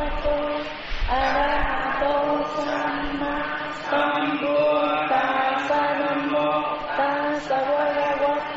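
Buddhist chanting: voices intoning melodic phrases of a second or two each, with short breaks between phrases.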